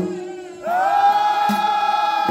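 Men's voices chanting together in a Comorian mulidi devotional chant, holding one long sung note that starts about half a second in, over a lower steady drone. A sharp beat falls near the middle.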